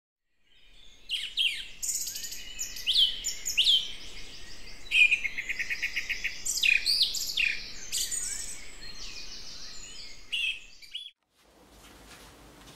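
Birds singing: many overlapping chirps, trills and falling whistles, starting about half a second in and cutting off suddenly near the end.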